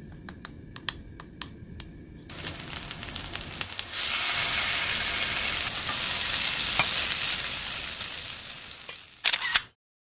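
A wooden spoon stirring and scooping Spam-and-tofu batter in a stainless steel bowl, with light clicks. From about two seconds in, oil sizzles as Spam-and-tofu patties fry in a pan, jumping louder about four seconds in and fading slowly. Near the end there are two sharp loud bursts, then it cuts off.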